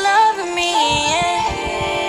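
Recorded R&B/hip-hop song with a woman singing long, held notes that slide between pitches over a drum beat.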